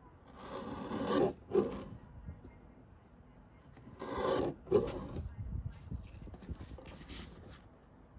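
Lever-arm guillotine paper trimmer cutting through a printed paper label strip twice. Each cut is a rising rasp of the blade shearing the paper, ending in a sharp clack, about a second in and again about four seconds in. Quieter scratchy rustling of the paper being shifted on the cutting board follows.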